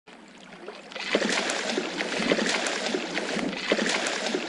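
Koi gulping and slurping at the water's surface: dense wet splashing with many quick little pops and smacks, swelling up over the first second.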